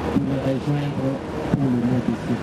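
A man speaking into a handheld microphone, his voice in short phrases with some drawn-out vowels.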